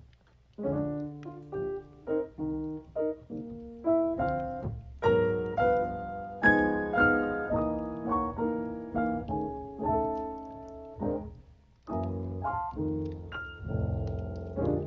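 Solo grand piano playing a slow introduction, a string of sustained chords that starts about half a second in and breaks off briefly near the end before resuming.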